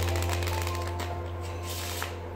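A deck of playing cards riffle shuffled on a table: a rapid run of fluttering clicks as the halves interleave in the first second, then a brief rush near the end as the cards are bridged back together. Background music with a steady low bass note plays underneath.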